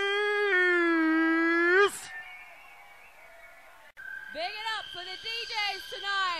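An MC's voice holding one long shouted note over the microphone for about two seconds, then a quiet gap. About four seconds in there is a click, and a dance track starts with a steady high synth note under more voice.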